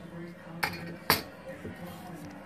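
Two sharp, light clicks about half a second apart, the second louder, over quiet background music.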